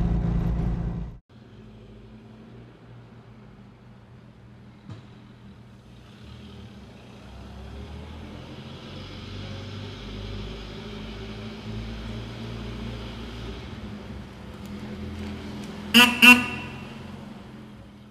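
A small car's engine runs loudly at road speed and cuts off abruptly about a second in. A quieter old car's engine then runs steadily, and near the end a car horn toots twice in quick succession.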